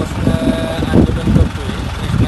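A vehicle engine running as a steady low rumble beneath a man's speech.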